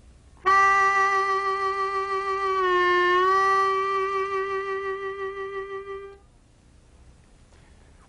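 Key-of-C diatonic harmonica playing one long held note. Its pitch is bent down slightly a little after the midpoint and released back up before the note ends: a tone-bend demonstration.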